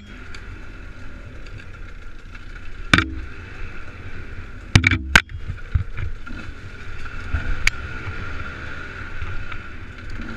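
Enduro dirt bike engine running steadily along a singletrack trail, with sharp knocks and clatter as the bike strikes rocks and ruts, once about three seconds in and twice in quick succession about five seconds in.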